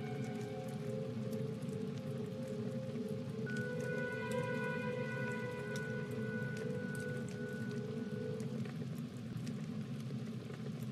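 Background music of long held notes that stops a little before the end, over a steady crackling, hissing noise of a fire burning.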